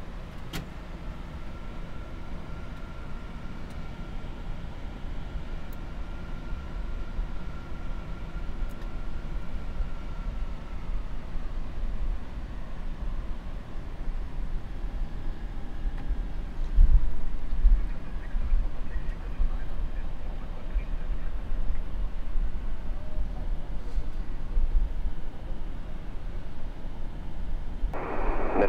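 Boeing 747 cockpit noise while taxiing onto the runway at idle thrust: a steady low rumble from the engines, airflow and rolling gear, with a faint steady whine through the first ten seconds or so. A single louder thump comes a little past the middle.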